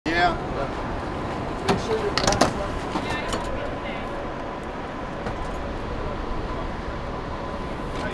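Steady outdoor background noise with a faint steady hum, snatches of voices and a few sharp knocks in the first half.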